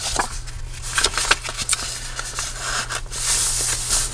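Paper and cardstock handled by hand: a tag on a journal page flipped down and pages moved, with small crinkles and ticks, then a longer rub of hands sliding over the paper near the end, over a steady low hum.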